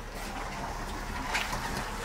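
Low steady background noise with light handling sounds as the camera moves, and one soft, brief scuff about one and a half seconds in.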